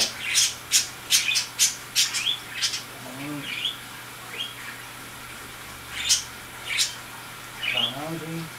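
A bird chirping and squawking in short, sharp high calls, many in quick succession over the first three seconds, then fewer and more spaced out.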